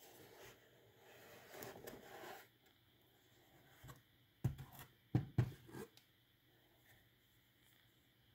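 A cardboard box of mandarin oranges being handled: a cardboard rustle in the first couple of seconds, then a quick cluster of knocks and bumps about four and a half seconds in as the box and the oranges inside are moved.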